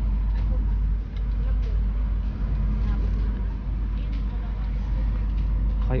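Outdoor market ambience: a steady low rumble with faint voices of people in the background.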